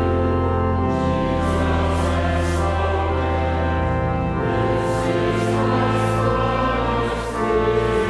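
Congregation and choir singing a hymn to pipe organ accompaniment, the organ holding long, steady bass notes under the voices.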